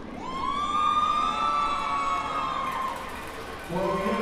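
A single siren-like wailing tone. It swoops up quickly, holds with a slight rise and fall, and dies away after about three seconds.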